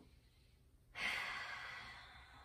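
A woman's long, breathy sigh out that starts suddenly about a second in and slowly fades.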